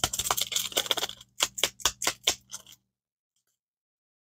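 Paper MRE instant coffee packet being handled and torn open: a dense crackle for about a second, then a run of separate crinkles and snaps that stops about three seconds in.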